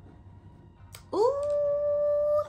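A woman's long hummed "mmm" of appreciation on smelling a fragrance, starting about a second in after a brief click, gliding up and then held on one steady pitch.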